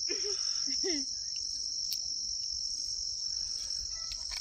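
A chorus of insects, crickets or the like, keeps up one steady, high-pitched chirring. Faint distant voices come through briefly in the first second.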